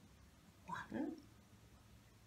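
A woman's voice saying two short, soft words about a second in, counting the elephants one by one.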